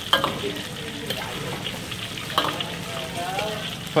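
Teochew spring rolls (chả giò Triều Châu) wrapped in bean-curd skin sizzling steadily as they deep-fry in a wok of hot oil, with a metal ladle turning them and a few sharp clicks of the ladle against the wok.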